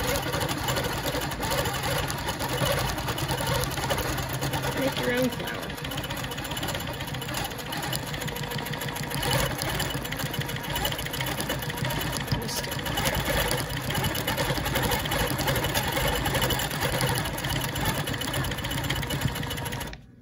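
Longarm quilting machine stitching steadily, its needle and ruler foot moving up and down in a fast, even rhythm as the head is guided along an acrylic ruler.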